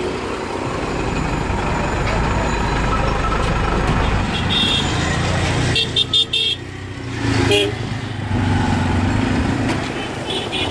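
Dense road traffic with a bus engine rumbling close alongside, and vehicle horns honking in short blasts through the middle: once, then three quick toots about six seconds in, then once more.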